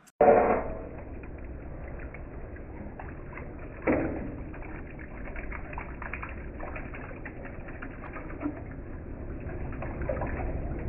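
Surface grinder grinding the top of an aluminium inlet manifold under flowing coolant: a steady, muffled low rumble with scattered faint clicks, and louder sounds just after the start and about four seconds in.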